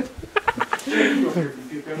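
A man laughing: a quick run of short, choppy laugh pulses, then a longer voiced laugh.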